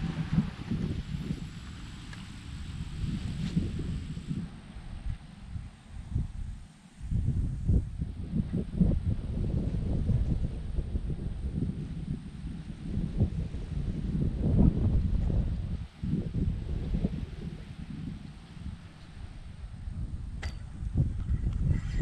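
Wind buffeting the microphone in uneven gusts, with a brief click shortly before the end.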